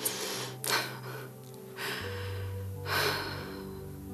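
Soft background music of sustained low tones, over which a woman breathes audibly several times, with short deep breaths at the start, before one second, and around three seconds.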